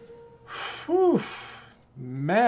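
A man's breathy sigh, with a short rise and fall in voice pitch about a second in, as the last note of the song fades out at the start.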